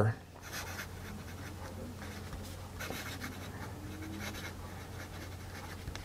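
Lamy Safari fountain pen's fine steel nib writing on Clairefontaine paper: a soft, irregular scratching as the words are written.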